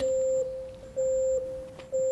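Electronic countdown beeps: a steady pitched tone sounds for about half a second once each second, fading between beeps, marking the last seconds of a countdown timer.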